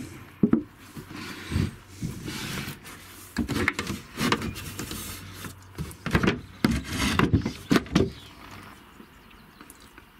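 Wooden floorboards and hatch panels being handled and shifted: scattered knocks, clatter and scraping of wood, quieter near the end.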